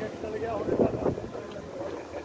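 People talking in the background, loudest just before a second in, with wind rumbling on the microphone.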